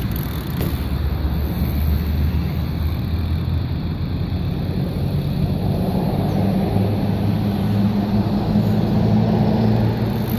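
A motor vehicle's engine running nearby: a steady low hum that gets louder over the last few seconds.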